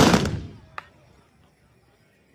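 Volley of black-powder muzzle-loading muskets fired together by a tbourida troop of horsemen: one loud blast that dies away within about half a second, then a single sharp crack a little under a second in.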